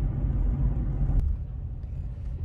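Low, steady rumble inside a car's cabin as it drives. The higher part of the noise eases off about a second in, after a faint click.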